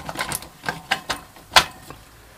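A run of sharp clicks and light knocks as a perfboard contact plate is pressed back down onto the tops of 18650 lithium cells in a plastic holder, the loudest click about one and a half seconds in.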